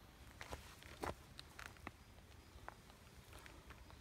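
Faint footsteps on a dirt trail strewn with dry leaves and twigs: a few scattered, irregular light crunches and ticks.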